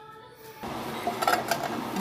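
Electric fan running with a steady whoosh that starts abruptly about half a second in, with a few light clicks a little later.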